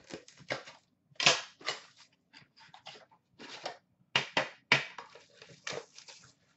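Plastic shrink wrap being torn and crinkled off a trading-card tin and its box, in an irregular run of short crackling rustles. The loudest come about a second in and again around four to five seconds in.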